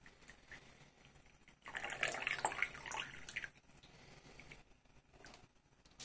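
Tea poured from a glass teapot into a ceramic cup, the stream of liquid splashing into the cup, louder for about two seconds in the middle.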